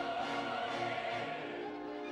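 Opera chorus singing with orchestra, several voices and instruments holding steady chords.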